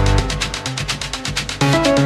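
Techno track playing: rapid hi-hats over a repeating synth riff, with a heavier low hit at the start and again near the end as the pattern comes round about every two seconds.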